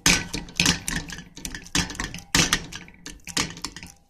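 Potato masher knocking against the bottom of a stainless steel pan as it mashes baked sweet potato and banana with almond milk. The strikes come in a steady rhythm, roughly one every half second.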